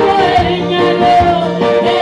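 Gospel worship singing through hand-held microphones, with instrumental accompaniment. A lead voice holds long notes and slides down in pitch.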